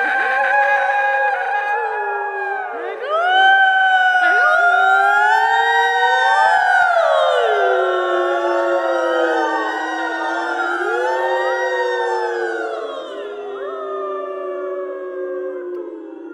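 Several women's voices singing long, overlapping notes that slide slowly up and down in pitch. The voices swell together about three seconds in and thin out toward the end.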